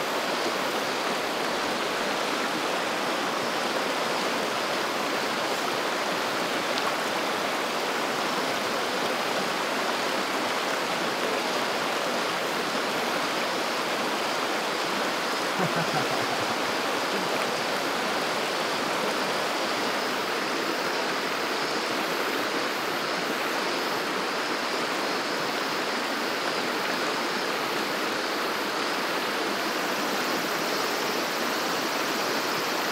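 Shallow mountain stream rushing steadily over rocks and stones, a continuous even water noise.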